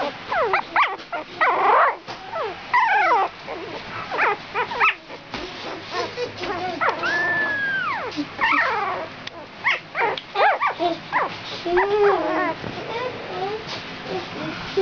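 A litter of young puppies whimpering and squeaking: a run of short, high cries that rise and fall in pitch, with one longer arching cry about seven seconds in.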